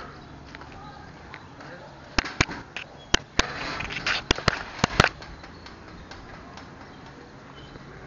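An irregular run of about eight sharp clicks or knocks, packed between two and five seconds in, over a low steady hiss.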